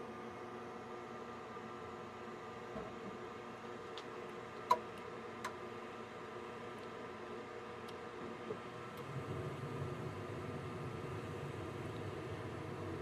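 Concord gas furnace starting up: a steady motor hum with a few sharp clicks, then about nine or ten seconds in the burners light and a low rumble of flame joins. The furnace lights normally again, its flame sensor and pressure-switch port freshly cleaned.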